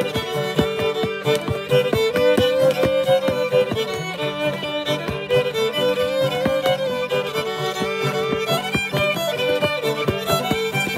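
Old-time fiddle and clawhammer banjo playing a lively tune together, with a flatfoot dancer's shoes tapping out steps on a wooden board. The bowed fiddle melody runs over a dense, even patter of banjo strokes and foot taps.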